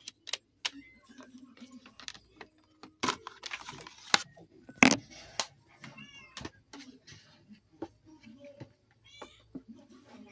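Sharp plastic clicks and knocks of a DVD being handled in its case, loudest about three to five seconds in, with a short pitched pet call about six seconds in and again near the end.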